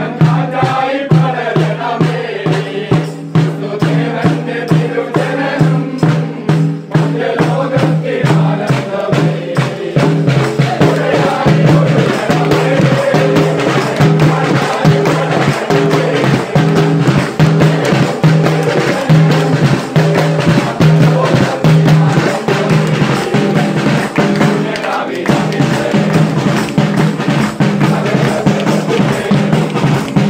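A group of carolers singing a Christmas carol together, backed by a snare drum played with sticks in a fast, steady beat and by hand clapping.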